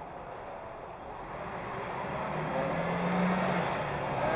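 A motor vehicle passing: a broad engine and road noise with a steady low hum, swelling over the first three seconds and easing near the end.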